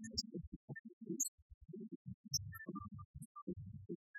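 Live band music from a low-fidelity cassette recording, muffled and patchy: mostly low-end sound that keeps dropping in and out.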